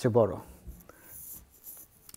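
A man's voice speaking a word or two in Bengali, then a pause with only faint rustling.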